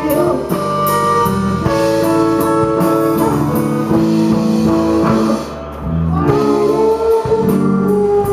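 Live rock band playing with guitars to the fore and no lyrics heard, an instrumental stretch of the song. The music thins out briefly about five and a half seconds in, then comes back in.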